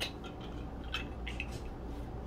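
Faint, scattered small clicks and light rustles of gloved hands handling fruit and skewers, over a low steady room hum.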